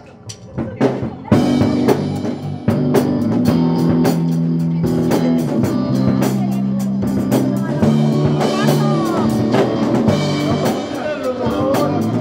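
Live band playing a rock song on drum kit and guitars: a few scattered drum hits, then from just over a second in the full band comes in with a steady beat over held bass notes. A voice comes in near the end.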